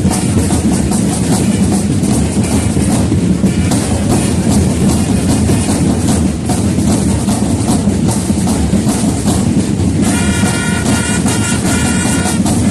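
A corps of parade drums playing a continuous, dense rolling rhythm. About ten seconds in, wind instruments join with held notes over the drumming.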